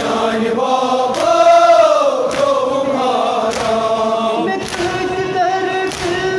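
Male voices chanting a Kashmiri noha (Shia lament) together. A sharp beat lands about every 1.2 seconds, in time with the chant, from mourners striking their chests (matam).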